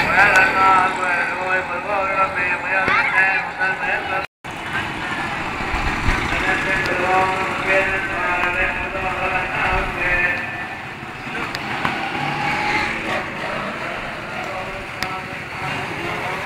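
Busy festival street noise: many overlapping voices of a crowd over steady road traffic. All sound drops out briefly about four seconds in.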